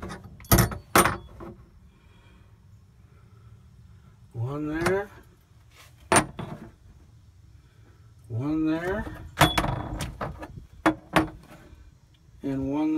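Metal flat washers clicking and clinking as they are handled and set down over the mounting holes in a cargo box floor: a few sharp clicks near the start, one around the middle and a quick cluster near the end.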